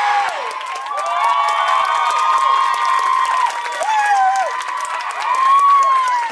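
A crowd screaming and cheering, with long high-pitched shrieks held for a second or more over steady clapping.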